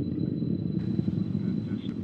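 Low, steady rumble with a crackly texture from a Soyuz rocket's engines climbing during first-stage flight. A faint hiss joins it about a second in.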